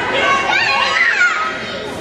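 Children in the audience shouting and calling out in high voices, with crowd chatter behind, echoing in a large hall.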